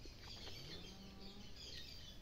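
Faint outdoor background of birds chirping, with a low faint hum that rises in pitch and then holds steady through the first half.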